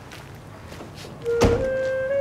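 Faint outdoor background, then about one and a half seconds in a loud thud opens a soap opera's closing theme music, with a held brass note after it.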